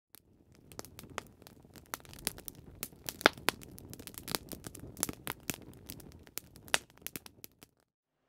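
Wood fire crackling, with irregular sharp pops over a faint low hiss that die away near the end.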